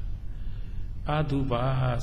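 A Buddhist monk's voice in Burmese, pausing and then resuming about a second in with long, drawn-out, chant-like tones. A steady low hum runs underneath.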